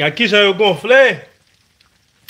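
Speech only: a person's voice says a short phrase in the first second or so, then a pause.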